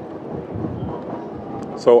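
Steady low rumble of outdoor city noise with no distinct events, then a man says "so" near the end.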